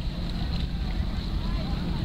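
Wind buffeting the microphone, a steady low rumble, with faint distant voices.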